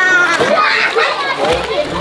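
Children's voices: several high-pitched voices calling and chattering over one another.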